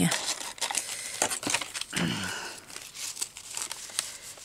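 Paper and fabric crinkling and rustling as hands handle and tuck scraps into a junk journal page, with many small crisp clicks.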